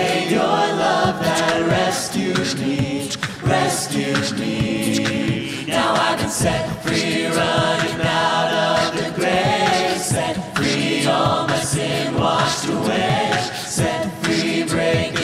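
A mixed-voice a cappella group singing a worship song in harmony into handheld microphones, with sharp percussive clicks running through the singing.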